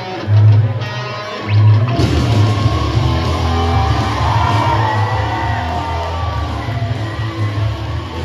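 Rock entrance music played loud through a hall's PA system. Heavy bass beats fill out into the full band about two seconds in.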